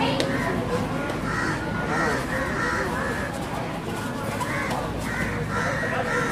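A kabaddi raider's continuous chant during a raid: the same short, hoarse call repeated quickly about twice a second.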